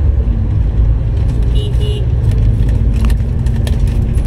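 Car cabin noise while driving: a steady low rumble of engine and road noise heard from inside the moving car, with a few faint clicks about three seconds in.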